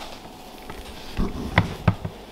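A low thump about a second in, then two sharp knocks close together near the end, from the clear plastic tub holding a ball python as it sits on the digital kitchen scale.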